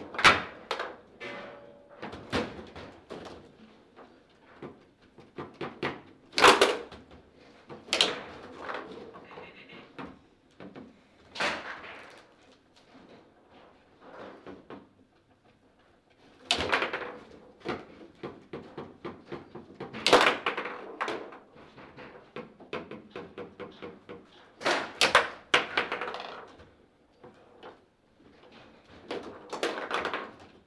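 Foosball in play: sharp clacks and knocks of the ball against the plastic players, the rods and the table, with several much louder hits spaced through and lighter ticking runs in between.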